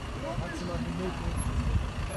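Outdoor street sound picked up on a phone: a steady low rumble with faint voices talking in the background.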